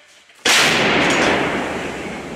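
152 mm Msta-B towed howitzer firing: one sudden loud blast about half a second in, trailing off slowly over the next second and a half.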